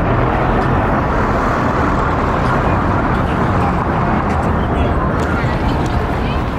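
Street traffic: a steady wash of cars and engines moving through a busy city intersection, with the voices of people nearby mixed in.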